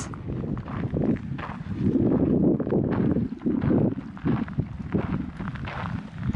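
Wind buffeting the microphone in uneven gusts, with footsteps on a gravel path.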